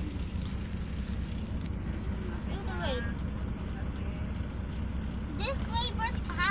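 Steady low drone of a moving bus heard from inside the passenger cabin, engine and road noise together. A child's voice cuts in briefly about halfway and again near the end.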